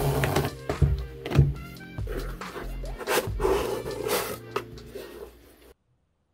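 Background music with a beat and pitched melodic lines, cutting off suddenly near the end.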